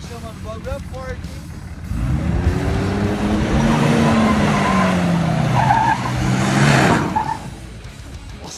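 Dodge Ram pickup's engine revving hard as the truck spins donuts on loose dirt, with the tyres spinning and spraying soil. The revs climb about two seconds in, hold high with a slight fall, and drop away suddenly about seven seconds in.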